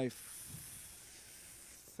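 A faint high-pitched hiss that slowly fades.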